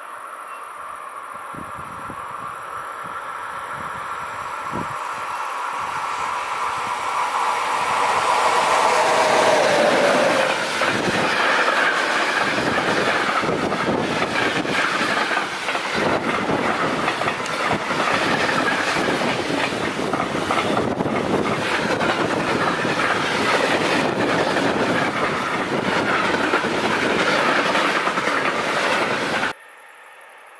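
Container freight train approaching and passing close by. The sound builds steadily and peaks as the locomotive passes about ten seconds in, its tones dropping in pitch. The wagons follow with a steady rumble and clatter of wheels on the rails, which cuts off suddenly near the end.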